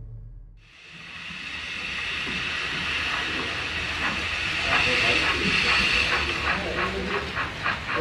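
Model BR 86 steam locomotive's sound module giving a steady steam hiss, then rhythmic chuffing that begins about halfway through and quickens to around four or five beats a second as the loco pulls its hopper wagons.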